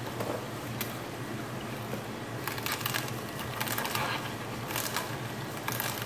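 Tribest slow masticating juicer running with a steady low motor hum while its auger crushes celery, giving irregular crackling crunches several times.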